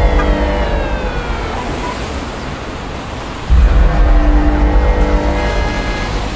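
Produced outro sound effect: a loud whooshing rush over a deep rumble with falling pitch sweeps in the first second or so, easing off and then surging again about three and a half seconds in.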